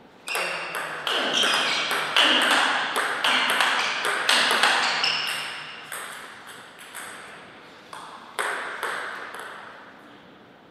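Table tennis ball struck back and forth between rubber paddles and bouncing on the table in a fast rally, each hit a sharp ringing click. The hits stop about five seconds in when the point ends, with a few scattered ball bounces after.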